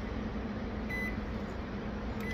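Microwave oven keypad giving one short, high beep about a second in as it is set, over a steady low hum.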